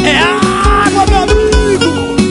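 Live band music with a steady kick-drum beat and sustained instrument notes. Right at the start, a long drawn-out cry sweeps down in pitch and holds for about a second over the music.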